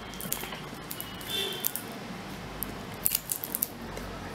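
Thin plastic water bottle crinkling and crackling as it is gripped and turned in the hand, with a cluster of sharp clicks about three seconds in.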